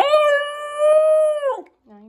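Basenji puppy yodelling: one long, loud howl-like call that slides up, holds a steady pitch for about a second and a half, then falls away. It is a distressed call from a young dog with separation anxiety.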